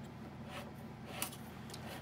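Faint rubbing and scraping of thin steel strapping being pushed and pulled through a 3D-printed ring roller, with a light click a little after a second in, over a low steady hum.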